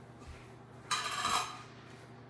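A brief clink and rattle of kitchenware about a second in, over a quiet kitchen.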